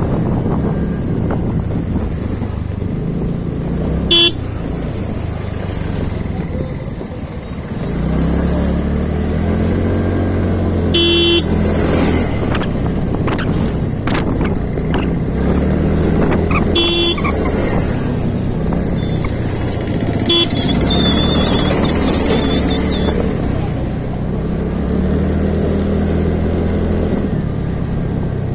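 A motor scooter's engine running while riding in town traffic, its pitch rising at times as it picks up speed. Four short vehicle horn toots cut through, the one about eleven seconds in the longest.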